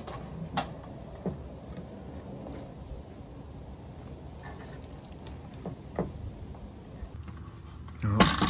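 Plywood foldout table on metal folding shelf brackets being folded and tried against the van's rear door, giving a few light knocks and clicks, the loudest about six seconds in. The panel is still hitting the door frame.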